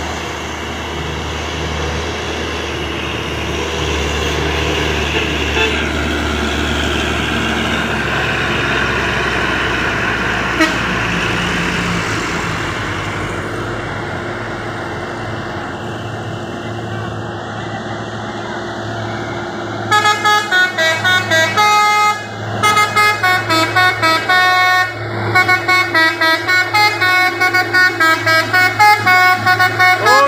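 Diesel engines of heavily laden trucks running under load as they climb slowly uphill. From about twenty seconds in, a multi-tone musical truck horn plays a rapid tune of short stepping notes to the end.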